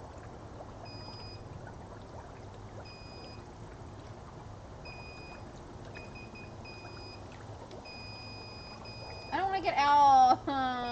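Inflatable hot tub's circulation running: a steady low hum under a constant wash of water noise. Short, high electronic beeps sound every second or two, and a loud voice cuts in near the end.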